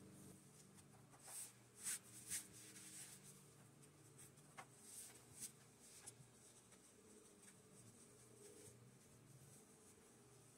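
Faint brushing and rustling of fabric being smoothed and folded by hand on a tabletop, with a few soft swishes between about one and six seconds in, over a low steady room hum.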